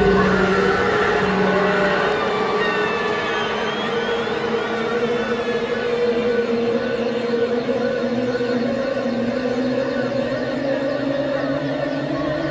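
A rock band's sustained droning chord over the arena PA, its notes slowly rising in pitch, with the crowd cheering and whistling over it.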